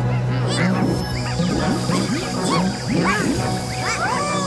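Cartoon pet characters chattering in squawky, honking gibberish, a quick run of short rising-and-falling calls, over background music with a steady low note.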